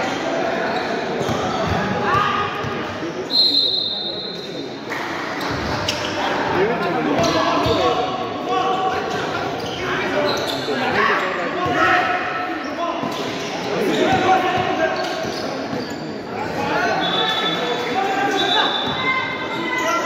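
A basketball being dribbled and bounced on an indoor court during play, with players and onlookers talking and calling out in a large echoing hall. A short high-pitched squeal comes about three seconds in.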